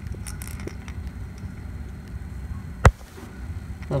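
Handling noise: a low steady rumble with a few faint ticks, then one sharp click a little before the three-second mark.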